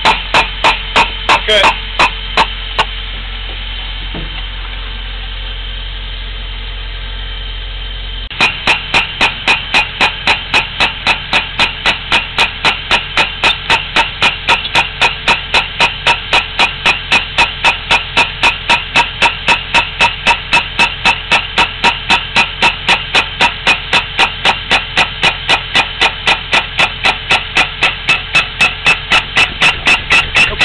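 Pneumatic piercing tool (trenchless boring 'missile') hammering through the soil, about three to four sharp blows a second, as it drives into the exit pit pulling the new sewer pipe behind it. The hammering stops for about five seconds a few seconds in, leaving a steady hum, then starts again.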